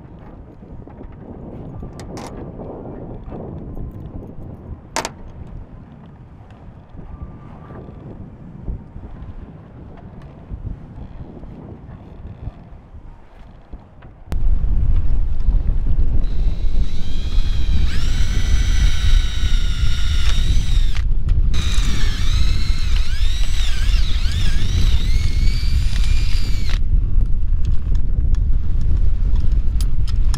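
DeWalt cordless drill whining as it bores a hole, in two runs of several seconds with a brief stop between them, its pitch wavering under load. Strong wind rumbles on the microphone through the second half, the loudest sound; before that, lower wind and boat noise with a few sharp clicks.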